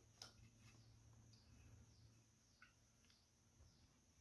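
Near silence: room tone with a couple of faint brief clicks.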